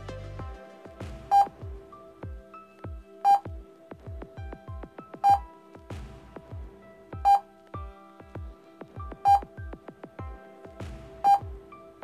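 Background music with a loud short electronic beep every two seconds, six in all, each beep marking a new number flashed by a mental-arithmetic drill program on a laptop.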